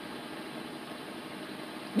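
Steady, even background noise inside a vehicle's cab, with no distinct knocks or tones, such as a running engine or a climate fan.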